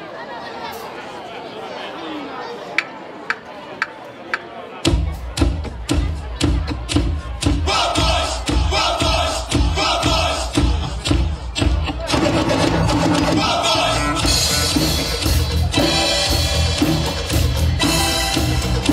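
Audience chatter, then four sharp clicks about half a second apart as a count-in. About five seconds in, drum kits start playing together in a steady rock beat, with a heavy bass drum.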